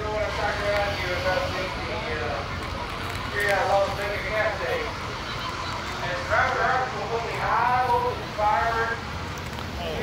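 Several people talking in the background as they walk, over a steady low rumble.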